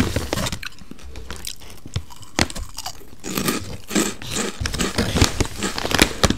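Close-miked chewing and mouth sounds at high microphone gain: a run of small wet clicks and crunches at the start, a sparser stretch with a few single clicks, then chewing again over the last few seconds.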